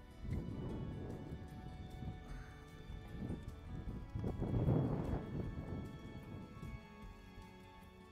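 A saddled horse's hooves in the soft sand of a round pen, a run of dull irregular thuds that is loudest about four to five seconds in, under background music.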